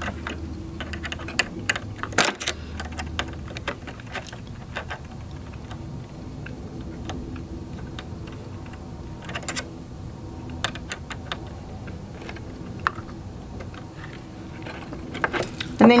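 Scattered light metallic clicks and taps as a walking foot is seated on a sewing machine's presser bar and its screw is tightened with a small screwdriver, over a faint steady hum.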